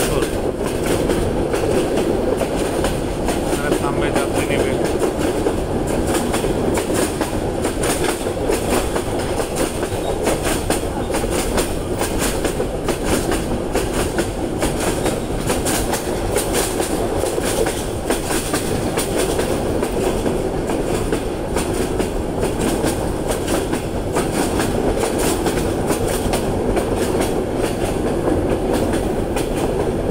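Train running steadily along the track, its wheels clattering continuously over the rails, heard from on board.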